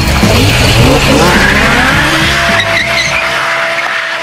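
Drift car engine revving up and down with tyres squealing, mixed over music whose bass drops away near the end; a steady tone comes in about halfway through.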